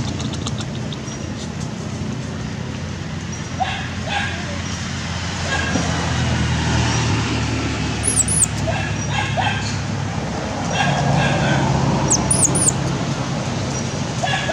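Short animal calls and a few high, arching chirps over a steady background hum.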